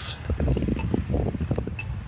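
Uneven low rumble of wind buffeting an outdoor microphone, with a few faint ticks.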